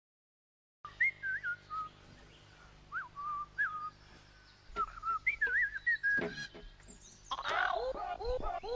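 Short whistled, bird-like notes that swoop up and down and settle on held tones, over a faint low hum. Music comes in near the end.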